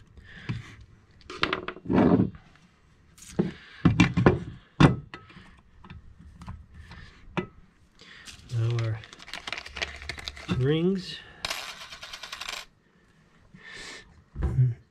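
Light metallic clinks and knocks of chainsaw engine parts, the piston and crankcase, being handled and set down on a workbench. Near the end there is a brief rapid rasp.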